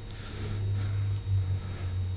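A low, steady hum fills a pause in speech.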